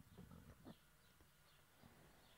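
Near silence: faint background tone with a few soft clicks in a pause between speech.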